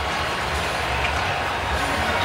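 Steady crowd noise of a hockey arena, an even wash of sound with no distinct cheers or impacts.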